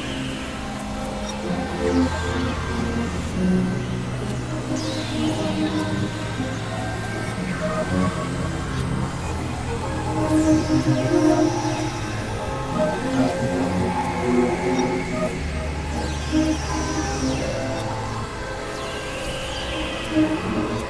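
Experimental electronic music from synthesizers (Novation Supernova II, Korg microKORG XL): layered drones of held low and middle notes that change every couple of seconds, with no steady beat. High falling sweeps cut across now and then, and the sound swells a little halfway through.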